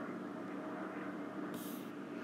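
Steady faint background hum of the recording room, with a brief soft high hiss a little past halfway.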